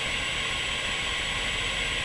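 Steady hiss, strongest in the upper-middle range, with a faint high-pitched steady whine over it.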